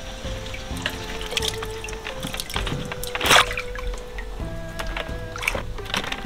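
Small black tomatoes being washed by hand in a basin of water: splashing and trickling, with the loudest splash a little past halfway. Background music with held notes plays underneath.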